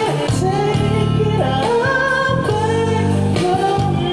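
A man singing a slow ballad into a microphone, amplified through a PA, over a strummed acoustic guitar, with long held notes that glide between pitches.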